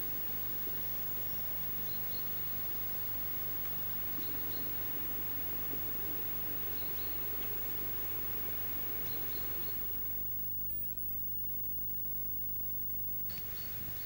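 Steady low hum and hiss of an old video-tape soundtrack, with a few faint, short high chirps. The hiss drops away for about three seconds near the end, leaving only the hum.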